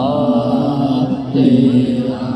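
Male voices chanting a line of an Urdu devotional poem in a slow, drawn-out melody, the notes held long; a second, higher voice enters at the start and the chant fades out near the end.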